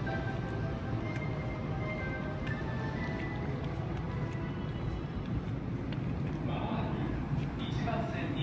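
Steady low railway rumble with a short chime melody dying away in the first few seconds, and voices starting near the end.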